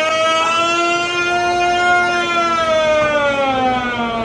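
Vekoma Boomerang coaster's lift drive whining as it hauls the train up the spike. One long, even tone rises slowly in pitch, peaks about halfway through, then falls away.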